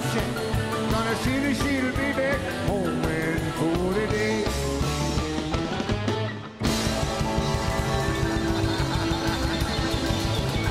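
Live rock and roll band music. About six and a half seconds in it dips for a moment and cuts abruptly to another live recording with a steadier beat.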